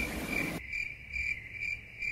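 A high-pitched chirp repeating evenly, about two and a half times a second.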